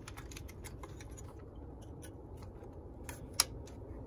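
Irregular light clicks and taps of a hand tool working on parts in a car's engine bay, with one sharp click about three and a half seconds in, over a low steady background hum.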